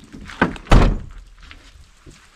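A motorhome's driver-side cab door shut with a heavy thunk about three-quarters of a second in, after a lighter click just before it.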